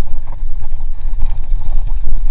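Low, unsteady rumble of wind buffeting an action camera's microphone as a hardtail mountain bike rolls fast over a forest dirt trail, with faint knocks from the bike and tyres on the ground.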